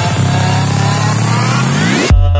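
Electronic dance music build-up. A fast drum roll breaks off just after the start, then a synth riser climbs steadily in pitch over a wash of white noise.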